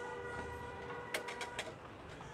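A distant vehicle horn held steadily for under two seconds, with a few sharp clicks about a second in.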